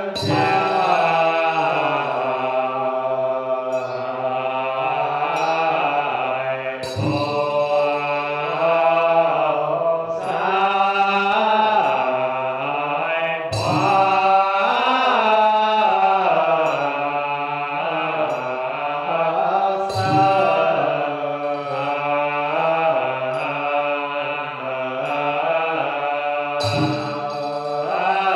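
Chinese Buddhist liturgical chanting by a monk and congregation, a slow, sustained melodic chant. A sharp percussion strike marks the chant about every six and a half seconds.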